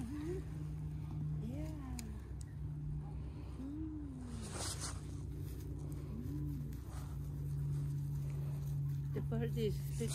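Quiet stretch with a steady low hum throughout and a few soft, short hummed vocal sounds, each gliding up and down in pitch. A faint click comes about halfway through.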